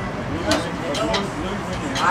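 People talking in conversation; no other sound stands out.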